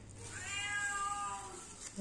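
A single drawn-out meow, rising and then falling in pitch, lasting over a second.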